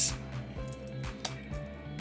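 Steady background music, with a few faint clicks of trading cards being shuffled by hand.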